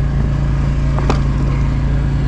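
An engine running steadily, a constant low hum that doesn't change, with one short click about a second in.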